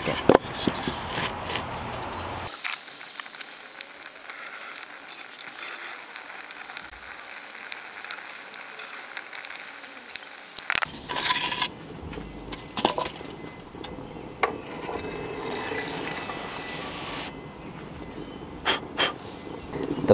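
A wooden board knocked into place over the mouth of a concrete pizza oven, then faint scattered clicks, a louder scrape about eleven seconds in, and a few scattered knocks.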